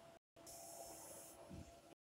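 Near silence: a faint steady high tone and hiss, with a short burst of higher hiss and a soft low thump about a second and a half in.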